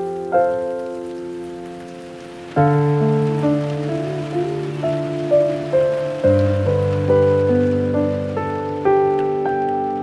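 Slow, gentle piano music over the steady hiss of falling rain. The rain fades out near the end while the piano carries on.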